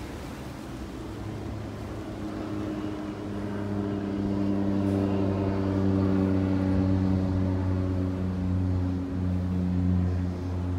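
A motor running with a steady low hum of unchanging pitch, growing louder over the first few seconds and then holding.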